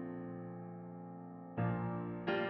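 Slow background piano music: a held chord fades away, and a new chord is struck near the end.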